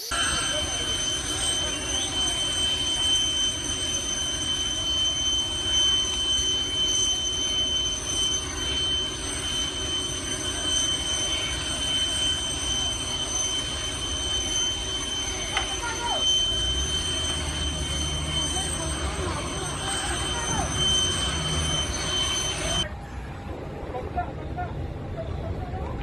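Steady high-pitched jet whine over a broad rush of noise from a Boeing 747 on an airport apron. A low rumble joins about two-thirds of the way through, and the whine cuts off shortly before the end.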